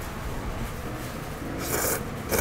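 A person slurping hand-made abura soba noodles: a short, noisy slurp near the end.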